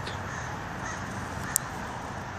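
Crows cawing over steady outdoor background noise, with one sharp click about one and a half seconds in.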